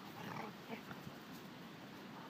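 Dogs at play making a few short, faint vocal sounds in the first second.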